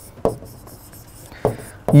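Pen writing on a whiteboard: faint scratching strokes, with a short tap about a quarter second in.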